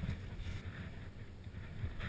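Low, muffled rumble of wind and handling noise on a GoPro Hero 2's microphone as the skier shifts in deep snow.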